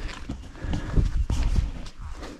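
Footsteps on a grassy dirt hiking path, a handful of irregular soft thuds that come most clearly from about a second in, over a low rumble on the microphone.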